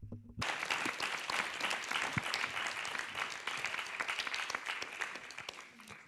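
Audience applauding, starting about half a second in and fading away near the end.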